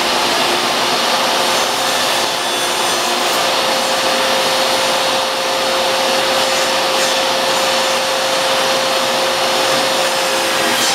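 Dewalt table saw running steadily at full speed while a laminate flooring plank is fed through the blade along the fence.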